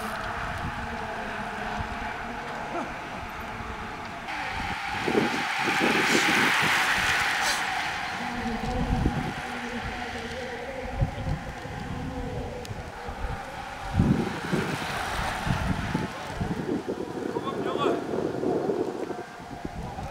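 Outdoor roadside sound with wind on the microphone and indistinct voices, and a road vehicle passing that is loudest about six to seven seconds in.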